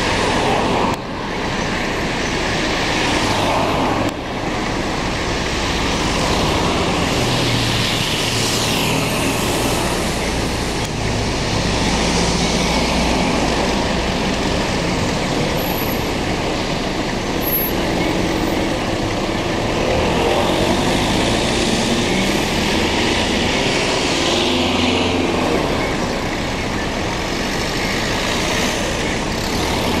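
City street traffic: cars pass one after another, their sound swelling and fading, with a lower engine rumble through the middle stretches.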